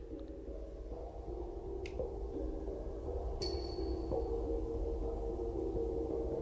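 Electronic music fading in from a record: several sustained droning tones that grow steadily louder, with one brief high ping about three and a half seconds in.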